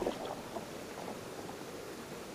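Stream water rippling and lapping against the hull of a Canadian canoe as it moves on a shallow rocky river, with a few small splashes just after the start.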